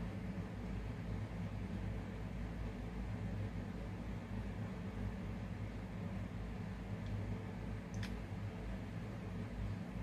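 Room tone: a steady low hum under a faint even hiss, with one faint click about eight seconds in.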